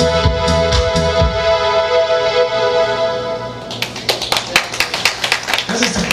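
Electronic keyboards end a song live: the beat stops about a second in and a held keyboard chord rings on, then audience applause starts a little past halfway.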